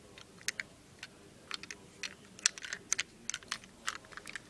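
Quick, irregular light clicks and taps of a small toy car being handled and turned in the fingers.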